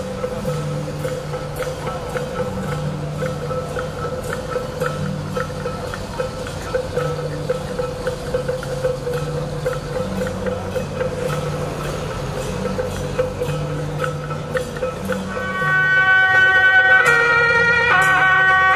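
Temple procession music: a steady held note over a repeating low bass figure, with light percussive ticks. About fifteen seconds in, a louder, reedy wind melody comes in over it.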